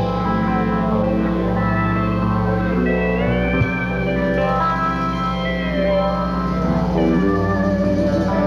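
Steel guitar played with band backing, its notes gliding up and down in pitch under the bar over a steady sustained chord.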